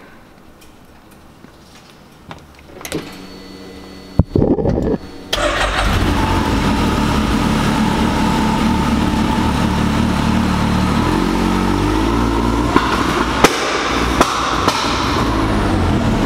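Can-Am Maverick X3's turbocharged three-cylinder engine starting about four to five seconds in, then running loud and steady, held on the launch control with ignition retard, with a few sharp pops near the end.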